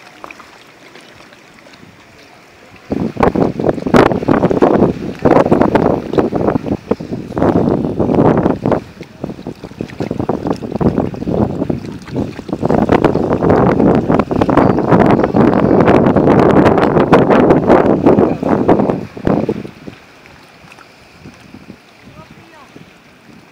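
Wind buffeting the phone's microphone in gusts. A loud, rough rushing comes in about three seconds in, rises and falls, and drops away a few seconds before the end, leaving a low background of wind and water.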